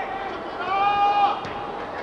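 A drawn-out shout on one high, steady pitch, lasting most of a second near the middle, over the open-air background of a football pitch.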